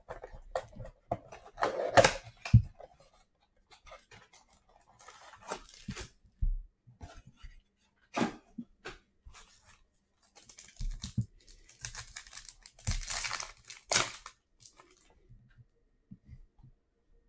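Plastic wrapper torn off a blaster box of trading cards and the box opened, then card packs handled and a pack wrapper torn open, in irregular bursts of tearing and crinkling with sharp clicks.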